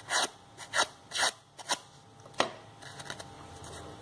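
Crepe-paper petal being curled by drawing its top edge over a scissor blade: four short scraping strokes in quick succession, then a single sharp click a little past halfway, followed by faint paper rustling.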